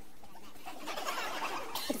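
Steady faint background hiss in a pause, then a sped-up, high-pitched voice begins near the end.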